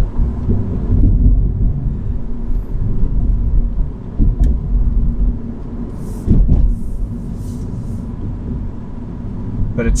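Road and tyre rumble inside the cabin of a Mini Electric hatch driving at city speed, with a faint steady hum and no engine note; the rumble swells briefly about six seconds in.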